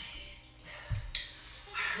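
Faint background music, with a single soft low thump about halfway through followed at once by a brief hiss.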